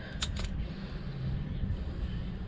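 Two light clicks from hand tools and wire being handled, over a steady low background rumble.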